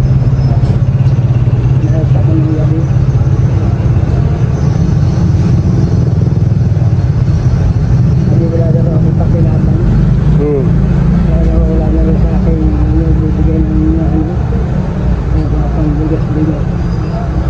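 Steady low rumble of a motor vehicle engine running close by, easing slightly near the end, with indistinct voices over it.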